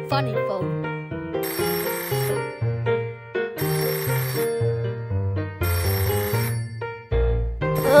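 Cartoon sound effect of an old rotary telephone's bell ringing three times, each ring about a second long, over background music.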